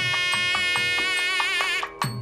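Mangala vadyam temple music: a nadaswaram holds one long, steady note over regular thavil drum strokes, about four a second. The note breaks off just before the end.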